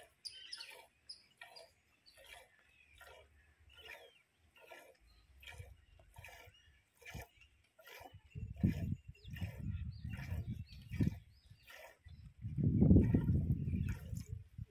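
Hand-milking a cow: streams of milk squirting into a steel pot in a steady rhythm of about two strokes a second. From about eight seconds in a low rumbling noise joins, loudest near the end.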